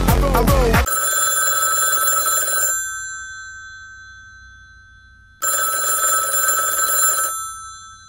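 Telephone bell ringing twice, each ring lasting about two seconds and the rings a few seconds apart, with a high tone lingering and fading after each. Before the first ring, a backing music track cuts off suddenly about a second in.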